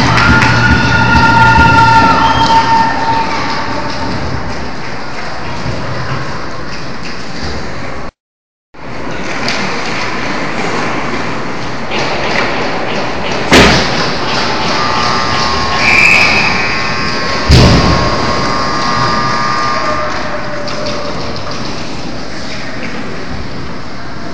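Indoor ice hockey game: steady rink noise, with a held tone over the first two seconds and two sharp thumps about halfway through and four seconds later. The sound cuts out for half a second about eight seconds in.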